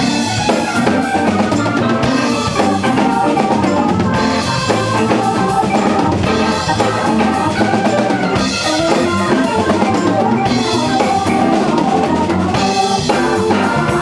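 Live band playing an instrumental passage: a Korg M50 keyboard played over a drum kit and bass guitar, continuous and steady in loudness.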